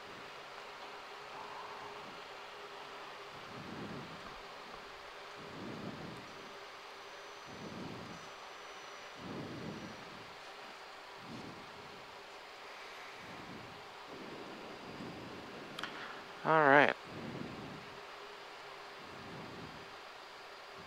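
Steady, low-level in-flight cockpit noise of a Cessna CitationJet CJ1 descending on approach: an even hiss with a faint steady hum, and soft swells every couple of seconds. A short, loud voice sound breaks in about three-quarters of the way through.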